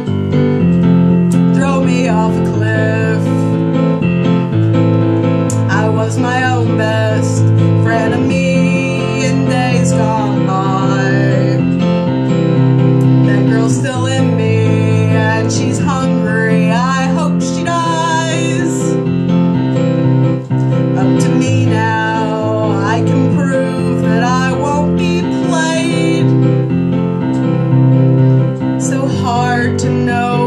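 A woman singing a slow song while accompanying herself with piano chords on a keyboard.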